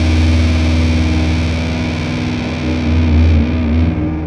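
Squier Jazzmaster fitted with Fender CuNiFe Wide Range humbuckers, played through distortion on its rhythm circuit: a low chord held and ringing out steadily.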